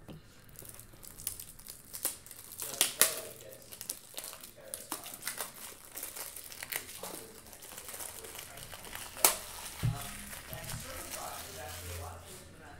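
Plastic card sleeves and wrapping being handled: crinkling with scattered clicks, and a couple of sharper snaps about three seconds in and just after nine seconds.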